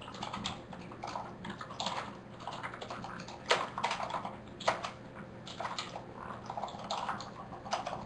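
Typing on a computer keyboard in irregular bursts of key clicks, with two louder key strikes about three and a half and four and a half seconds in.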